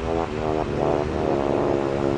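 A steady humming drone that shifts in pitch a few times.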